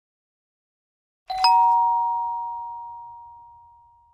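Two-note electronic chime, a lower note then a higher one struck in quick succession, ringing on and fading slowly over about three seconds.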